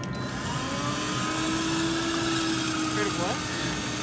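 Hot-drink dispenser running, its motor whirring steadily as a light-brown drink pours from the nozzle into a paper cup.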